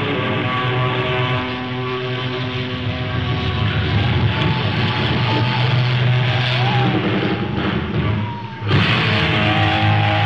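Live hard rock band playing, heard on a rough, muddy audience recording: distorted electric guitar holding sustained notes, with a few bends, over bass and drums. About 8.5 s in the sound briefly dips, then the full band comes back in sharply.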